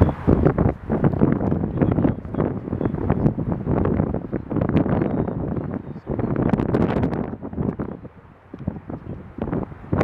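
Wind buffeting the microphone in uneven gusts, loud and rumbling. It eases briefly about six seconds in and again near the end.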